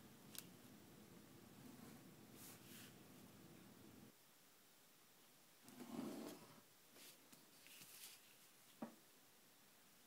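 Near silence: faint scratching of a stylus scoring lines into card stock along a ruler, with a short tick near the end.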